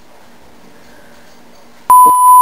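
A censor bleep, a steady high-pitched electronic tone, cuts in abruptly near the end over quiet room tone, dubbed in to mask a spoken word.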